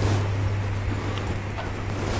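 Steady low electrical hum, with faint room noise and no speech.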